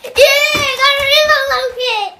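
A young child's high-pitched, excited sing-song voice, held on a nearly steady note for almost two seconds, with a few soft low thumps underneath.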